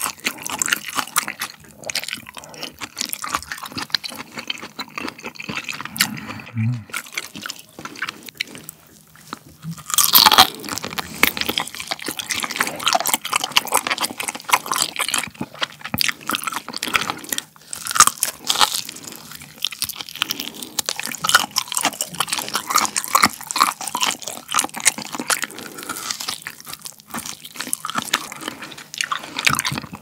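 Close-miked eating sounds: slurping and chewing of cold mulhoe (spicy raw-fish soup) at first, then biting and chewing braised pig's trotters (jokbal) with their soft, gelatinous skin, a dense run of wet smacks and clicks. The loudest bites come about 10 and 18 seconds in, and a short satisfied "mm" comes about six seconds in.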